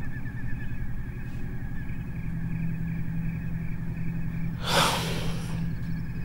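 A man's heavy breathing while crying, with one loud, sharp breath about five seconds in, over a steady low hum.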